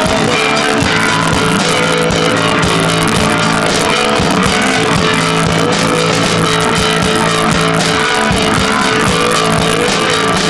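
Rock band playing live, guitars and a drum kit together, loud and steady with a regular beat.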